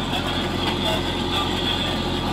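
Fendt 311 tractor's engine running steadily under load while pulling a working potato harvester, heard inside the cab, with a steady high whine from the machinery.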